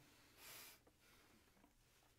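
A person drawing one deep breath in: a short, soft rush of air lasting about half a second.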